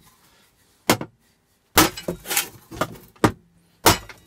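A hammer striking the riveted sheet-metal casing of an old water boiler to bash it open. Four blows land at uneven intervals, and the second is followed by a brief rattle.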